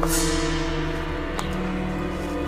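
Tense background score of held, steady chords. A struck metallic hit at the start rings out and fades over about a second.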